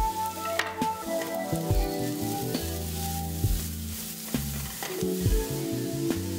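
Diced onion sizzling in a frying pan while a spatula stirs it, with a few sharp knocks and scrapes of the spatula against the pan, over background music.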